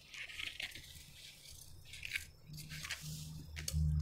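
Tailoring scissors cutting cloth along a paper pattern: a series of short, crisp snips at an uneven pace with brief pauses between strokes.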